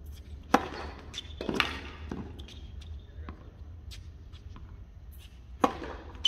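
Tennis ball struck by rackets on a hard court during a rally: a sharp serve hit about half a second in, then fainter hits and bounces from the far end, and another sharp hit from the near player just before the end.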